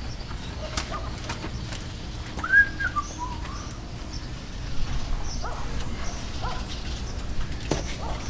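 Cloth rubbing and scrubbing over a truck's wet chassis, with scattered small clicks of handling. About two and a half seconds in comes a short high chirp that rises and falls, the loudest sound, and a few fainter chirps follow later.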